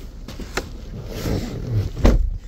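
Rustling and shuffling of a person climbing into a car's driver's seat, with a short light knock about a quarter of the way in.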